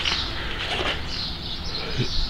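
Outdoor background noise with faint, distant bird calls.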